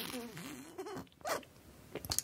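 Sipping from a glass bird-shaped drinking glass filled with a seed-flecked drink. A wavering, warbling gurgle runs for about a second, then comes a short slurp.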